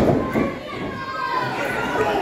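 Crowd of spectators shouting and calling out in a hall, children's voices among them, after a thud right at the start.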